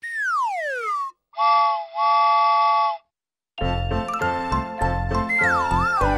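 Cartoon sound effects: a whistle glides steeply down in pitch for about a second, then a two-part breathy whistle blast sounds several notes together. About three and a half seconds in, cheerful children's Christmas music with jingling bells starts, with a wavering, falling whistle-like glide near the end.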